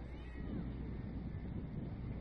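Faint, distant high-pitched calls from players and spectators, their pitch sliding up and down, over a steady low rumble.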